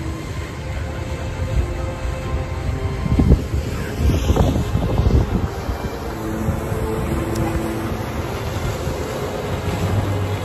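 Wind rumbling and buffeting on a handheld phone's microphone, under soft background music of held notes that change pitch every second or so.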